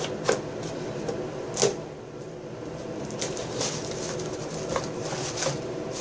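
A small cardboard shipping box being cut open and unpacked by hand: scattered clicks, scrapes and rustles of tape, cardboard and packaging, with one sharper scrape about one and a half seconds in.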